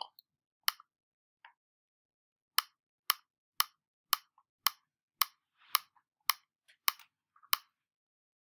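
Computer mouse clicks: one click, then a steady run of about ten clicks, roughly two a second, as a calendar date picker is stepped forward month by month.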